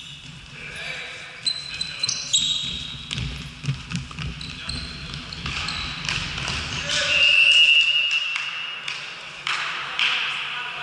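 Futsal play on a sports-hall floor: ball kicks and bounces echoing around the hall, short high shoe squeaks on the court, and players calling out. A longer squeak about seven seconds in is the loudest moment.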